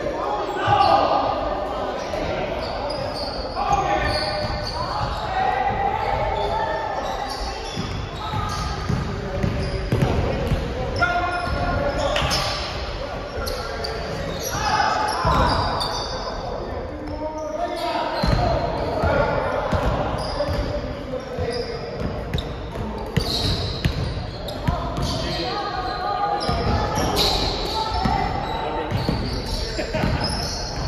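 A basketball bouncing and being dribbled on a hardwood gym floor, echoing in a large hall, with players' voices calling out during play.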